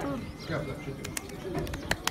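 Faint, indistinct talk around a table, with a few sharp light clicks about a second in and again near the end.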